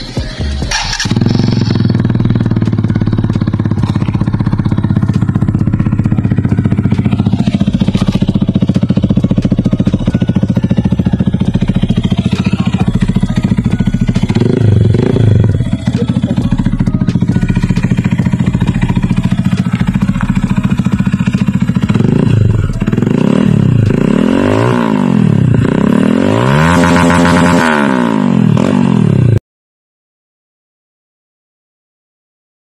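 Rusi Titan 250 FI motorcycle's fuel-injected 250 cc engine idling steadily, revved briefly around the middle and blipped several times near the end, each blip rising and falling in pitch. The sound cuts off suddenly just before the end.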